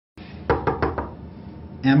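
Knuckles knocking on a door, four quick raps in about half a second, followed by a man starting to speak near the end.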